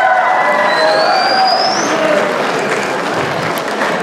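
Studio audience applauding and cheering, a dense steady clatter of clapping with a high rising whistle about a second in; it eases off slightly toward the end.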